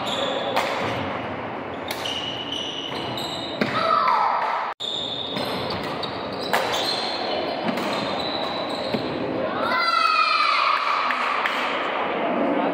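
Badminton rally on a wooden indoor court: sharp racquet strikes on the shuttlecock and sneakers squeaking on the floor, all echoing in a large hall. Two longer, falling squeaks stand out, about four seconds in and about ten seconds in.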